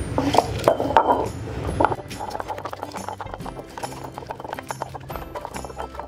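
A stone roller knocking and grinding dried red chillies on a granite grinding slab (ammi kal), in a quick irregular run of small knocks and clicks as the chillies are crushed, with background music underneath.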